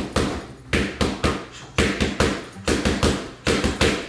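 Boxing gloves striking focus mitts in a rapid run of punches: about ten sharp smacks, many in quick one-two pairs.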